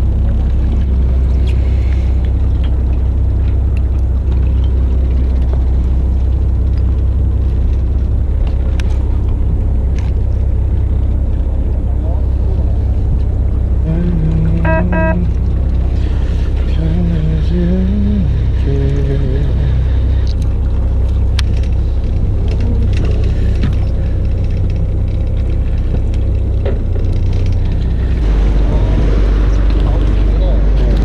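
A fishing boat's engine running with a steady low hum. Voices come through faintly for a few seconds around the middle.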